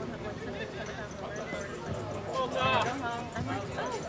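Several people talking and calling out across a softball field, with one louder, higher-pitched shout a little past halfway.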